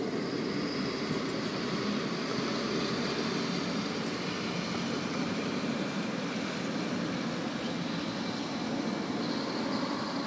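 Steady, even hum of street traffic with no distinct events.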